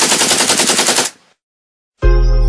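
Rapid burst of automatic gunfire: evenly spaced shots in quick succession that cut off suddenly about a second in.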